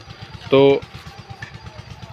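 A small engine idling: a low, rapid, even throb running on under a man's voice, who says one short word about half a second in.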